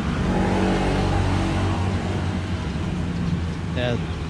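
Road traffic: a motor vehicle's engine humming as it passes, strongest in the first two seconds and easing after.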